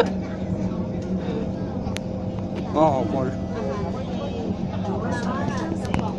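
Steady low hum of a metro train running, heard from inside the passenger car, with brief snatches of voices about three and five seconds in.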